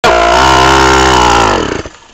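Small 49cc mini dirt bike engine running at a steady buzz, then dying out about one and a half seconds in as it stalls.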